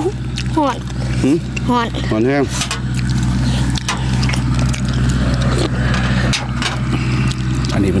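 A steady low hum like an engine running nearby, with short clicks and smacks of people eating with their fingers and a spoon. A few spoken words come in the first couple of seconds.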